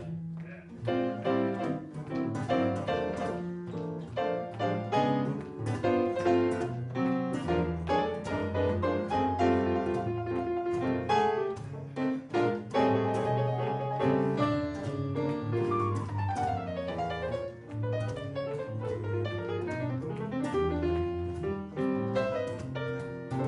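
Live straight-ahead jazz from a piano and guitar duo texture: piano playing busy lines over guitar chords, with a quick descending run of notes about two-thirds of the way through.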